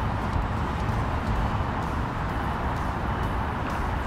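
Steady low rumble with a hiss over it, unbroken: a crane's engine running as it hoists a load.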